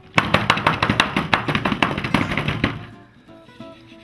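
Glass plate knocked rapidly against a tabletop to crush white chocolate, a fast run of sharp knocks that stops about three seconds in.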